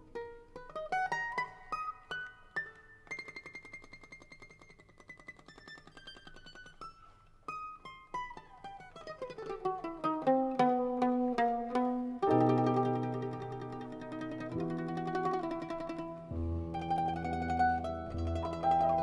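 Mandolin and piano playing an improvisation. It starts softly with sparse high plucked notes and a run falling in pitch, then low piano chords come in about twelve seconds in and the music grows louder.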